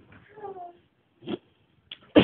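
A short pitched call, slightly falling in pitch, about half a second in, followed by a brief click a little after the middle.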